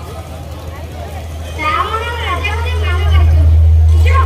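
A voice amplified through the stage loudspeakers, heard in a short phrase about two seconds in, over a steady low hum that swells louder near the end.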